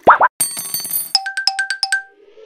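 Cartoon-style sound effects for an animated intro: two quick rising 'boing' sweeps, a bright shimmering sparkle, then a fast run of short ringing bell-like dings, about six in under a second.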